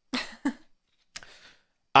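A man's brief breathy laugh: two quick exhalations close together, then a fainter breath a little after a second in.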